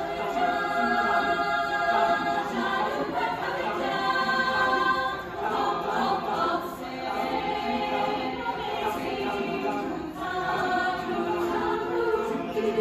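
Large mixed choir singing in parts, holding sustained chords. The choir comes in louder right at the start and eases off briefly twice before swelling again.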